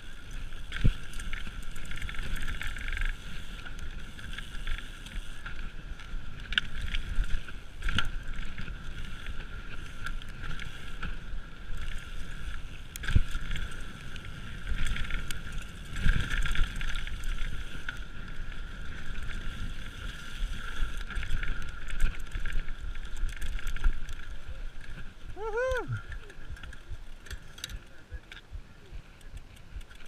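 Mountain bike riding fast down a dirt trail: continuous wind noise on the microphone with tyre rumble and rattling from the bike, and sharp knocks as it hits bumps. A short gliding voice sound comes near the end.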